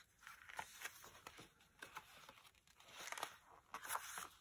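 Faint rustling and crinkling of paper pages as a project booklet is flipped through and pressed flat, a little louder near the end.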